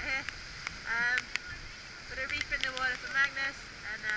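A woman's voice in short, high-pitched utterances, with a steady hiss of wind and sea spray behind it.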